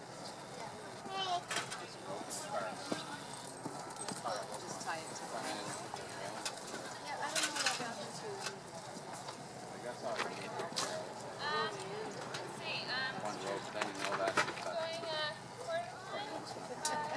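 A horse cantering on a sand arena, its hoofbeats heard under people's low voices talking throughout.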